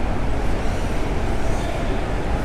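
Steady background noise of a large indoor exhibition hall: an even rumble and hiss with no distinct events.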